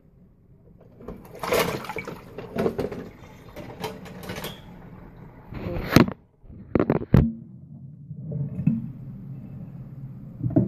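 Irregular rustling and clatter with two sharp knocks about six and seven seconds in, then a steady rush of running water starts near the end.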